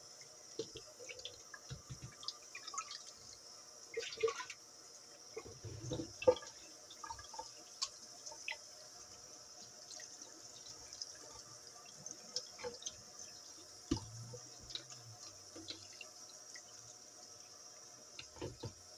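A thin stream of tap water runs onto raw meat in a stainless steel colander over a steel sink, with a steady hiss. Scattered wet splashes, drips and small knocks come as the meat and colander are handled; the loudest are about four and about six seconds in.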